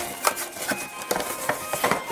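Music playing at a moderate level through a small Bluetooth lantern speaker, with a run of short sharp clicks over it.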